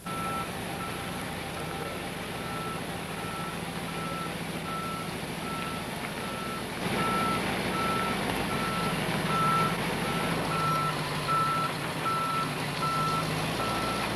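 A dump truck's backup alarm beeping steadily, one tone repeating a little faster than once a second, over the truck's engine running, which grows louder about halfway through as the truck reverses.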